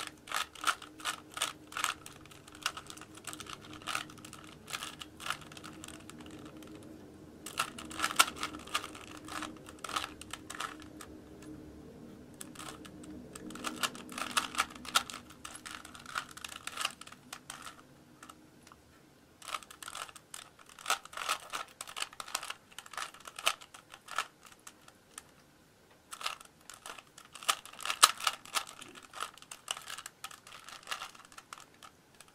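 Plastic 3x3 Rubik's cube being turned by hand: quick runs of clicking layer turns, broken every few seconds by short pauses of a second or two.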